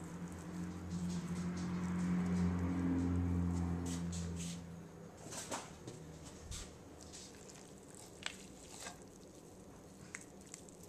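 Hands tearing and deboning a rotisserie chicken in a plastic bowl: soft wet squishes and scattered small clicks, clearest in the second half. For the first four seconds or so a steady low hum is louder than the tearing, then stops.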